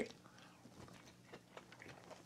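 Faint chewing of a bite of firm seitan sausage, with a few soft mouth clicks.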